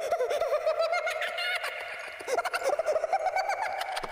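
A child's ghostly laughter sound effect: a string of quick, high-pitched giggles rising and falling in pitch, over a steady background drone.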